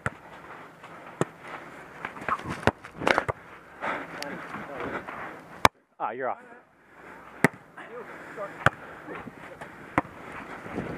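A volleyball being struck by players' hands and forearms during a rally: a string of sharp slaps about one to two seconds apart, with players shouting and calling between the hits.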